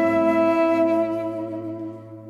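Instrumental music: a woodwind holds one long note over a steady low drone, fading away near the end.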